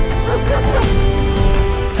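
A dog barking over steady orchestral film-score music.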